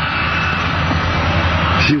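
Steady drone of an airliner's engines as heard inside the cabin: a low hum under an even hiss.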